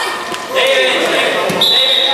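A thud on the hard indoor court floor about one and a half seconds in, as a young player falls face down. Around it are children's shouting voices echoing in the hall, and a high steady tone starts just after the thud.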